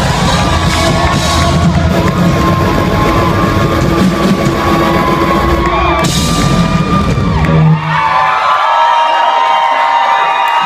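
Loud live rock band playing with heavy drums and bass, stopping abruptly about three-quarters of the way through at the end of the song. A crowd then cheers and whoops.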